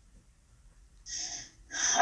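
Near silence, then about a second in a woman takes a short, sharp breath in, and her voice starts up near the end.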